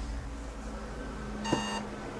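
A click as the rabbit figurine is set down on a mir:ror RFID reader, then at once a short electronic beep of about a third of a second as the reader detects the tag.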